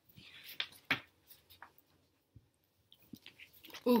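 Picture book's paper pages being handled and turned: a short soft rustle and two sharp paper snaps within the first second, then a few faint taps.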